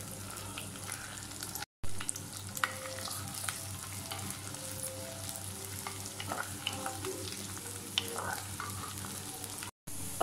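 Shallots and garlic cloves frying in oil in a clay pot: a steady sizzle with small crackles, stirred now and then with a wooden spatula.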